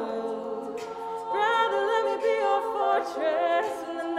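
Women's a cappella group singing in close harmony without instruments, several voices holding chords with vibrato; a new, louder phrase comes in about a second in.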